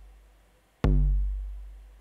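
Eurorack bass drum module triggered by a randomized gate sequence. The deep boom of one kick fades out, then just under a second in another kick hits with a sharp click and a long low boom that dies away slowly. The hits are sparse because the pulse width is set to full, so only the steps that are not tied together trigger the drum.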